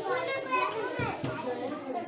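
Children's voices chattering and talking over one another in a room.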